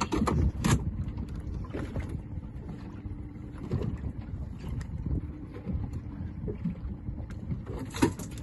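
Wind rumbling on the microphone aboard a small open fishing boat at sea, with water against the hull and a few short knocks.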